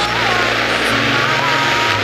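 Cabin noise of an Aquila AT01 light aircraft in cruise: the steady drone of its Rotax four-cylinder engine and propeller under a loud, even rush of airflow.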